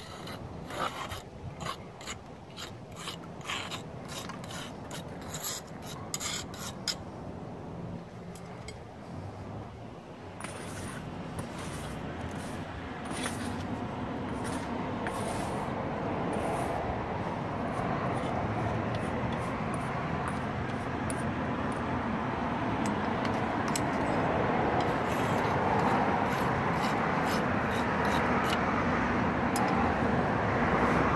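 Steel mortar striker scraping and rubbing along fresh mortar joints in brick, a run of short strokes as the joints are struck smooth. From about ten seconds in, a steady background noise swells gradually and covers the strokes.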